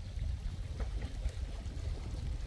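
Steady low rumble of wind on the microphone over faint lapping lake water, with a few soft ticks.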